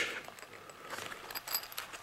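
Hands handling a zippered knife pouch, with a few faint metallic clinks in the second half, like the zipper pull jingling as the case is opened.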